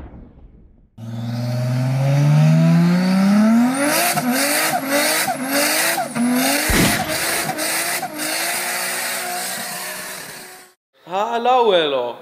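Car engine accelerating hard: one long climb in pitch, then a run of shorter rises and drops like quick gear changes, with sharp cracks and a deep thump partway through. It cuts off suddenly near the end.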